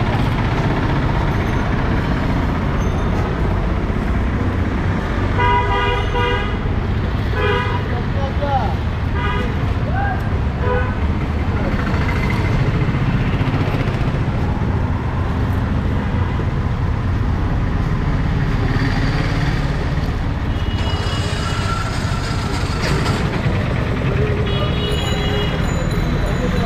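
Busy city street traffic: a steady low rumble of engines, with vehicle horns honking in short flat blasts, a pair about six and seven seconds in and more near the end.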